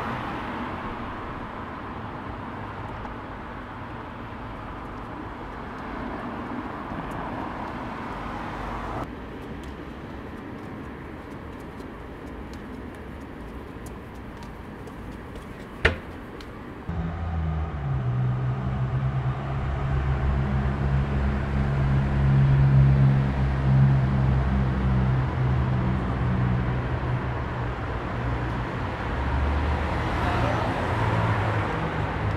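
Night-time city street ambience with a steady wash of traffic noise. About nine seconds in the background cuts to a quieter hush, a single sharp click comes near the middle, and a second or so later a loud, low, steady hum with a fixed pitch starts and runs on.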